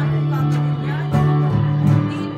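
Live band playing: guitar over long-held low keyboard chords, with a couple of sharp hits about a second in and near the end.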